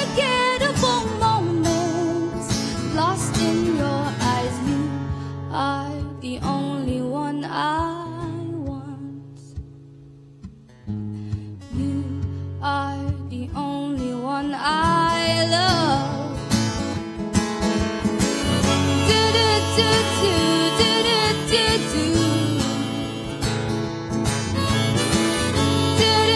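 Live band music: a woman singing over guitar, bass and keyboard. The music thins to a quiet passage about ten seconds in, then builds back up.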